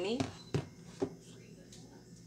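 Plastic whipped-topping tub set down on a kitchen countertop: two short knocks about half a second apart.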